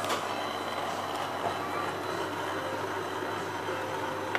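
Shinohara 52 sheet-fed offset printing press running steadily, its inking rollers turning in the red-ink printing unit: a continuous even machine noise over a low steady hum, with a few faint ticks.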